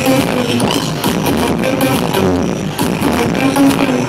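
Loud electronic dance music, trance from a live DJ set, played over a nightclub sound system with a steady beat and a held synth melody, recorded on a phone in the crowd.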